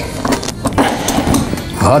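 Background music, with a few short clicks and knocks in the first second as the latches of a large old suitcase are undone and it is opened.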